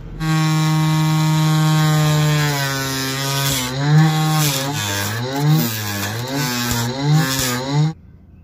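A loud buzzy pitched tone that starts suddenly, holds one steady pitch for about two and a half seconds, then bends up and down again and again before cutting off abruptly.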